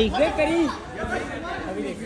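People talking and chattering: one voice is loud in the first half-second or so, then the talk drops to a quieter murmur of voices.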